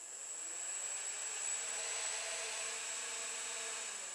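Small battery-powered pet nail grinder's electric motor running with a plastic propeller on its shaft: a steady whir with a thin high whine, coming up to speed in the first moment.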